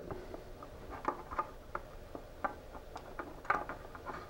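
A scatter of faint, light clicks and rustles from hands handling wires and pulling apart insulated crimp spade connectors.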